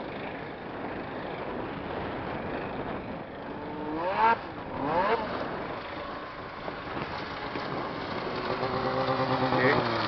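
Snowmobile engine: two quick rising revs about four and five seconds in as the sled starts down the hill, then a steady engine note growing louder as it comes in close near the end.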